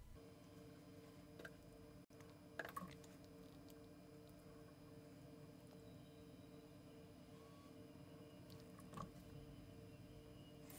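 Near silence: faint room tone with a steady low hum and a few faint, brief clicks.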